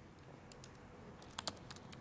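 Faint background hiss in a pause with a few short, soft clicks, two of them close together about a second and a half in.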